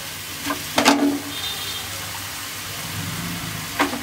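Raw chicken pieces sizzling in a hot pan of fried onion, tomato and mint masala, a steady hiss, with a few short knocks about a second in and again near the end.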